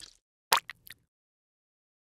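Logo-animation sound effects: a quick run of about four short pops, about half a second to a second in.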